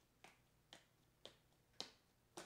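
Four faint, sharp plastic clicks, about two a second, the last the loudest: a sleeved trading card being tapped down into a rigid plastic toploader to seat it.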